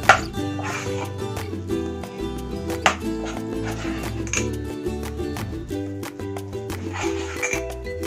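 Background music with a steady beat. Over it a metal spoon clinks sharply against an enamel pot twice, right at the start and about three seconds in.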